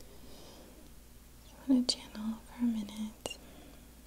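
Soft whispering: a few quiet murmured syllables about two seconds in, with two sharp clicks among them.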